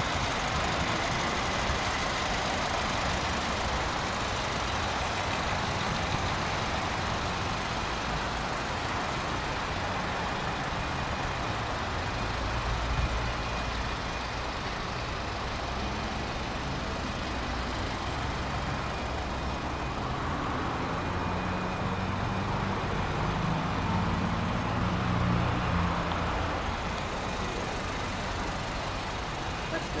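Steady motor-vehicle noise, with a low rumble that grows louder a little past halfway and swells again near the end.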